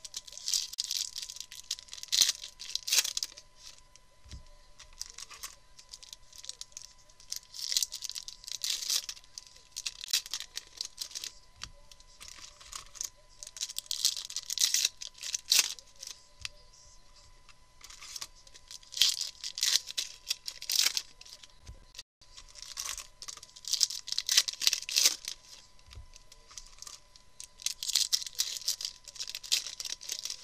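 Foil trading-card packs being torn open and crinkled by hand, one after another, in bursts of tearing and rustling about every five or six seconds.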